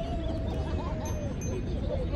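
A person's voice holding one long, steady note that ends about a second in, then scattered voices, over a steady low outdoor rumble.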